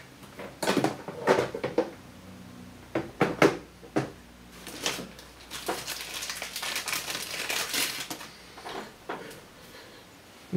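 Hard objects knocking and clattering as tools are rummaged through for a sharpening stone, with a stretch of rustling and scraping about six to eight seconds in.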